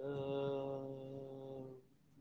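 A single low note hummed or voiced at a steady pitch for under two seconds, weakening partway through before it stops.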